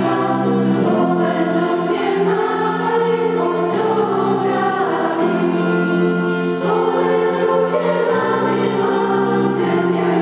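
Mixed school choir of girls and boys singing together in slow, held notes.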